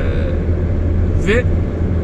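Steady low rumble of road and engine noise inside a car cruising on a motorway, with one short word spoken about a second in.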